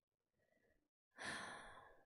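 A woman's breathy sigh into a close microphone: one exhale about a second in that fades away within a second.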